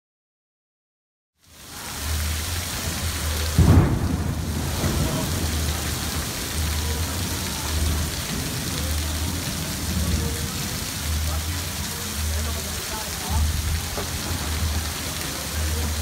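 Heavy rain pouring onto a flooded street in a thunderstorm, a steady dense hiss that starts abruptly about a second and a half in. A louder sudden crack of thunder comes a little under four seconds in.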